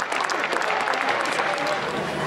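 Crowd clapping, a quick patter of many claps densest in the first second, with shouting mixed in.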